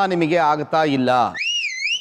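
A voice speaking, then, about one and a half seconds in, a short high whistle-like tone that slides up, down and up again.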